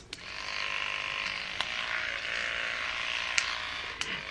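Amopé Pedi Perfect battery-powered electronic nail file running, its small motor spinning the buffing head. It comes up to a steady buzz just after the start, with two faint clicks along the way.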